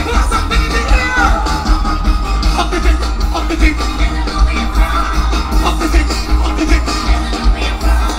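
Live soca band music played loud through the stage PA, with a steady heavy bass beat.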